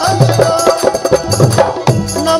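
Instrumental passage of a live Rajasthani bhajan: drums and hand percussion beating out a fast rhythm, with a melody instrument holding notes underneath.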